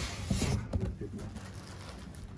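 Large cardboard carton rustling and scraping as it is handled and lifted off a subwoofer packed in polystyrene foam, loudest in the first half second and quieter after.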